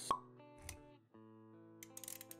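Intro sound design: a short, sharp pop with a brief pitched ping right at the start, a soft low thud a little later, then quiet background music with a few steady held notes and light clicks.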